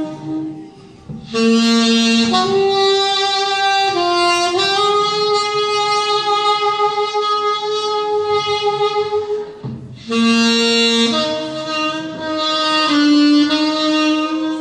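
Saxophone playing a slow melody of long held notes that step up and down in pitch. The phrase breaks off briefly about a second in and again near ten seconds, then starts over.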